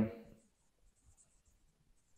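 Felt-tip marker writing on a whiteboard: faint, short scratching strokes, on and off.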